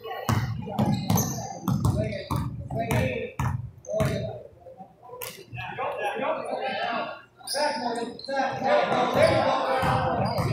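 Basketball dribbled on a hardwood gym floor, about three sharp bounces a second for the first few seconds, followed by spectators' voices talking.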